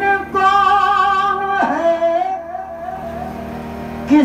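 A man singing an Urdu devotional song to a spiritual guide, drawing out a long held note that slides down to a lower held note about a second and a half in.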